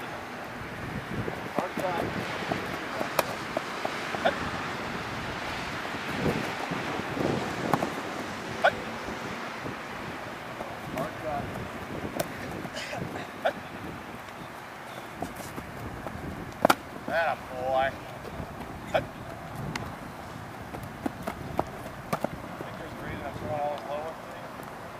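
Faint, distant voices of people on an open field over a steady background hiss, with scattered sharp clicks and knocks.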